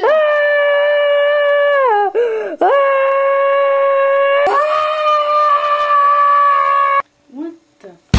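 A boy screaming in long, high, held screams, three in a row of about two seconds each; the first two fall away at the end and the last stops abruptly about seven seconds in.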